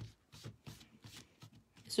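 Faint, quick string of soft scrapes and light taps, several a second, from hands handling and pressing together small wooden pieces being hot-glued.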